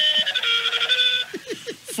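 Cell phone ringtone: electronic tones held at a few fixed pitches, stepping down about half a second in and cutting off a little over a second in, with laughter around it.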